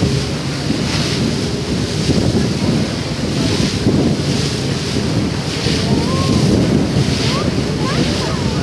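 Water rushing and splashing in a passenger ferry's wake, with wind buffeting the microphone in surges about once a second. The ferry's engine rumbles low and steady underneath.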